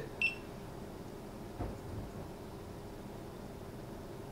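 Timemore Black Mirror coffee scale giving one short, high electronic beep as its timer button is pressed and held, the step that turns the scale's sound off. After it, quiet room tone with a faint low thump about a second and a half in.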